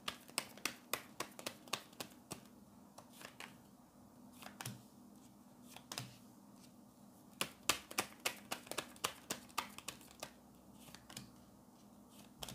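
Tarot cards being handled, drawn from the deck and laid down on a wooden table: sharp clicks and taps in quick runs, with pauses between. A faint steady hum lies underneath.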